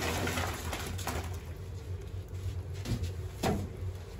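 Dumplings sliding off a woven bamboo tray and splashing into a wok of boiling water: a rush of noise in the first second, then the pot bubbling, with a single knock about three and a half seconds in, over a steady low hum.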